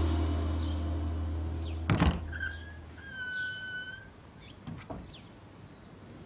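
Low, tense score fading out, then a single wooden thud about two seconds in, followed by an old wooden door's hinge squeaking, a short squeak and then a longer steady one, with a few faint clicks after.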